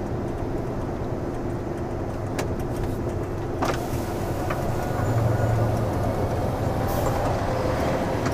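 Diesel engine of a rigid tipper lorry running steadily at low road speed, heard from inside the cab, with two sharp knocks or rattles between about two and four seconds in. The engine note grows slightly louder about five seconds in.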